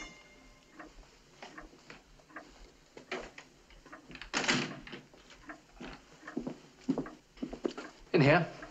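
Footsteps with scattered knocks and bumps of a wooden ladder being carried through a room, and one louder, longer bump about halfway through.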